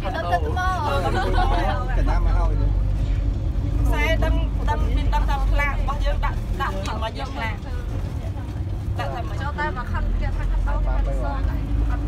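Women passengers chatting in a minibus cabin, over the low, steady rumble of the bus's engine.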